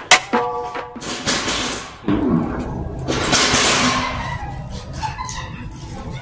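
Prank fart sound effects played from a phone: a long hissing fart, a short low one falling in pitch, then a second long hissing fart. A music beat cuts off right at the start.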